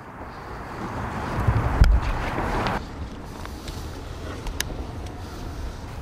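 Wind buffeting the microphone outdoors: a rush of noise with low rumble that swells about two seconds in and drops off sharply soon after, then a quieter steady hiss.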